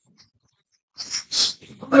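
Near silence for about a second, then two short breathy sounds like sharp exhalations, followed by a man saying "No." near the end.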